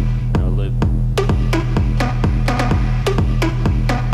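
Electronic tech house beat finger-drummed live on the pads of a Native Instruments Maschine: sharp percussive hits, about three a second, each dropping quickly in pitch, over a steady held bass note.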